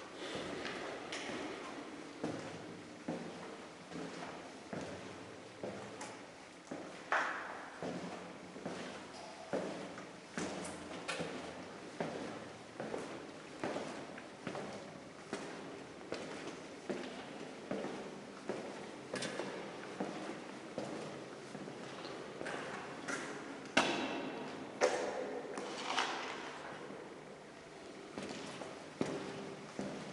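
Footsteps on a bare concrete floor in an empty corridor, walking at a steady pace of a little more than a step a second, with a few louder knocks about seven seconds in and again around twenty-four to twenty-six seconds.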